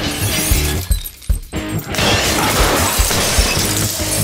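Glass bottle shattering over a head, once at the start and again, longer, from about two seconds in. Background music with a steady beat runs underneath.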